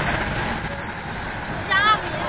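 A high, steady whistling tone with a slight wobble that lasts about a second and a half, then a short wavering squeak near the end.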